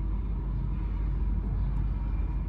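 A steady low rumble that neither rises nor falls, with no other distinct event.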